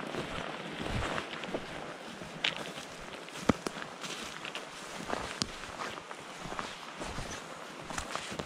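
Irregular footsteps, with sharp knocks scattered among them, over a steady rushing background noise.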